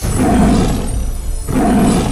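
Tiger roar sound effect, two roars back to back, the second starting about a second and a half in.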